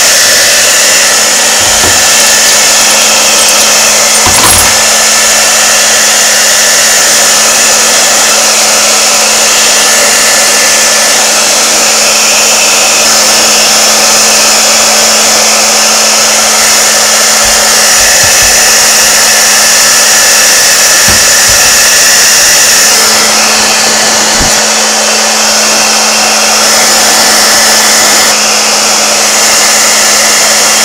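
Handheld hair dryer running steadily on warm air: a loud, even rush of air with a steady hum under it. A few light knocks sound now and then over it.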